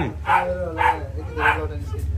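A husky's short whining yips, three in quick succession, over a steady low hum.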